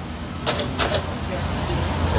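A motorcycle rear wheel turned by hand against a dragging drum brake, with two sharp clicks about half a second and just under a second in, over a steady low hum. The wheel drags because the brake has locked on, which the mechanic says can come from worn-out brake shoes letting the cam lever tip over too far.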